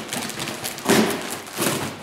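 Plastic wrapping on model-kit parts rustling and crinkling as they are handled in a cardboard box, with a louder rustle about a second in.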